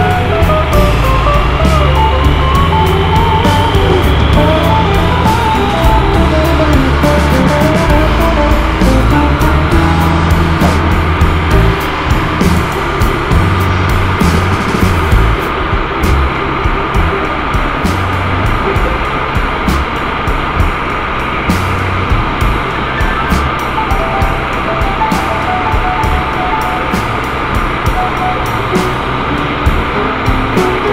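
Background music with a changing bass line and a melody of short, repeated notes.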